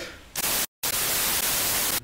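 Static hiss, a steady white-noise rush that starts abruptly about a third of a second in, drops out to dead silence for a split second, then resumes and cuts off suddenly.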